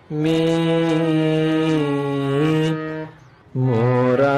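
Harmonium playing a slow kirtan melody: sustained reedy notes that hold steady and step from one pitch to the next. The line breaks off about three seconds in and starts again half a second later.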